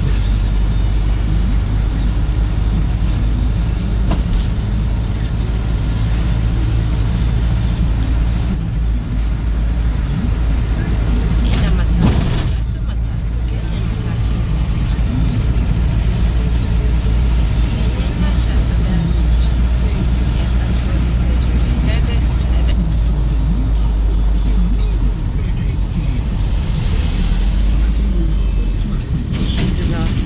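Steady engine and road rumble inside a moving passenger minibus, heard from the cabin, with music and voices playing over it.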